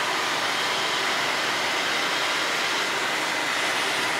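Kitchen exhaust vent fan running with a steady, even airy noise.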